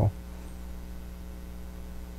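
Steady low electrical mains hum with a faint hiss.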